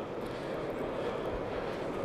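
Steady, even background din of a large exhibition hall, with no distinct events standing out.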